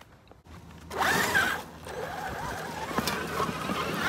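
Traxxas XRT RC monster truck's brushless electric motor whining up and down as it accelerates about a second in, with its sand paddle tires spraying sand. The sound then goes on steadily as the truck keeps driving.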